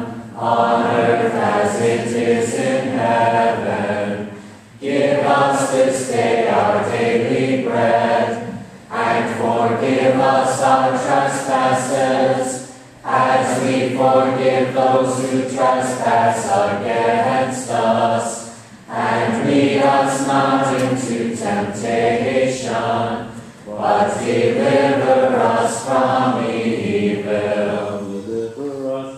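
Church choir singing a sacred song in phrases of four to five seconds, with short breaks between them.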